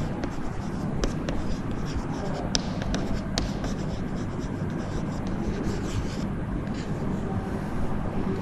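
Chalk writing on a blackboard: irregular taps and short scratches of the chalk over a steady low hum in the room.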